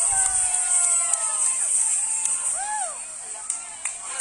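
People's voices calling out in long, drawn-out cries that slowly fall in pitch, then one short rising-and-falling call, over a steady high hiss; a few sharp clicks near the end.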